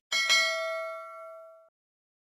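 A notification-bell 'ding' sound effect from a subscribe-button animation. It is struck just after the start and rings with several bright tones for about a second and a half, fading, then cuts off abruptly.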